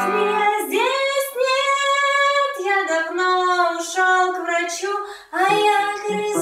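A high singing voice holding long, slow notes over light banjo picking. The first note climbs and is held for nearly two seconds, then the melody steps down. Near the end the voice breaks off briefly and the banjo comes back in fuller.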